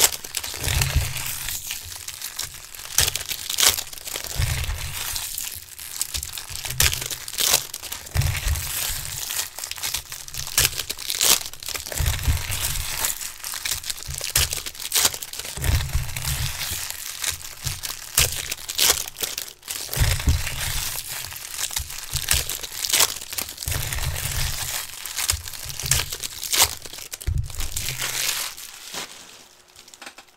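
Foil wrappers of baseball card packs crinkling and tearing as the packs are ripped open and the cards handled, with dull low thumps every few seconds. The handling dies down near the end.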